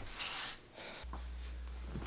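A brief rustle, then a steady low hum from about a second in.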